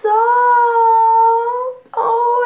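A woman's high-pitched, drawn-out hum held for about a second and a half, wavering slightly in pitch, made with the mouth closed. It is an excited, pet-like cooing, and another begins right at the end.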